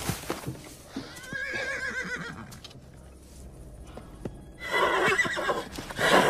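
A horse whinnying twice: a wavering whinny about a second in, then a louder one near the end, with hooves knocking on the ground.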